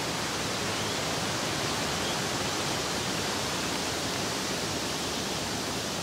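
A steady, even rushing hiss with no distinct events.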